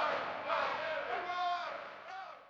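Faint shouting voices of a crowd, fading steadily toward the end.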